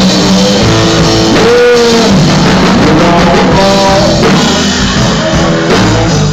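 Live blues-rock band playing: electric guitar over bass and drums, with a note that slides up and back down about two seconds in.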